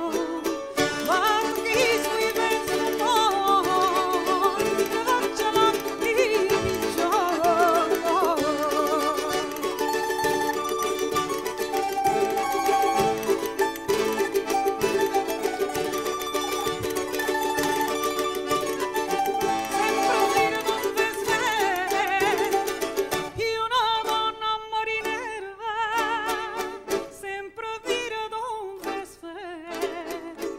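A jota, a Catalan folk song, performed live: a woman singing while strumming a Venezuelan cuatro, with a bandurria, accordion, guitarró and percussion. About three-quarters of the way through, the full sound thins to sparser strummed strings.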